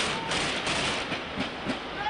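Field audio from a street clash: a dense, steady rush of noise with no clear single source standing out.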